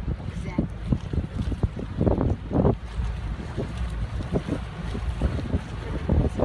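Wind buffeting the microphone: a heavy, uneven low rumble that swells and drops in gusts.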